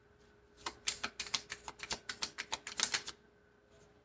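A deck of tarot cards being shuffled by hand: a fast run of crisp card flicks and snaps that starts about half a second in and stops after about two and a half seconds.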